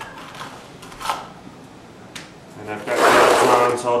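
A few brief scrapes and taps of a small steel trowel working mortar grout into the joints between stone hearth tiles and against the plastic mortar tub. A man's voice comes in near the end and is the loudest sound.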